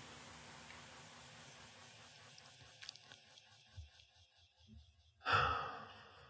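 A man's long sigh or exhale close to a handheld microphone, loud and fading out, about five seconds in. Before it the room is near silent, with a few faint clicks.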